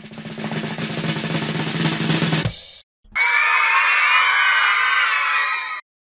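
A drum-roll sound effect that swells in loudness for about two and a half seconds and cuts off. After a brief gap it is followed by a second sound effect, a bright, wavering high-pitched sound lasting nearly three seconds, typical of a puzzle game's build-up and reveal.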